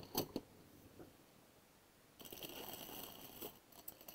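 A squeegee set down among utensils in a plastic storage drawer with a short knock, then a faint rustle about two seconds later.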